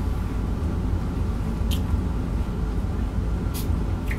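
Steady low hum, with two brief crisp clicks about two seconds apart: mouth sounds of fried chicken being chewed.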